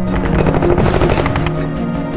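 Dramatic background score with sustained tones, and a fast, even run of sharp percussive hits through the first second or so.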